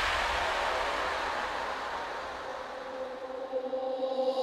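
Breakdown in a bass-boosted electronic dance track: a white-noise wash that grows duller and fades out, over a single held synth note. Near the end the level begins to flutter, just before the next section.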